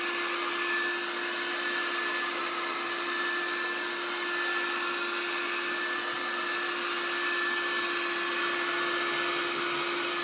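Handheld hair dryer running steadily on its low setting: an even rush of air with a constant motor whine.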